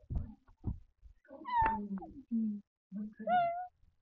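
A cat meowing twice: a falling meow about a second and a half in, and a shorter rising one near the end.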